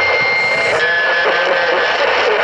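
Uniden HR2510 radio receiving a distant station through heavy static, with a steady heterodyne whistle that drops to a lower pitch about halfway through and a faint voice garbled underneath.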